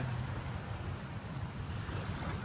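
Shallow floodwater washing against and over a street kerb, pushed along by waves from passing cars, under a low, steady rumble.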